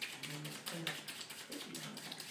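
Deck of playing cards being shuffled by hand: a quick run of soft clicks as the cards tap together.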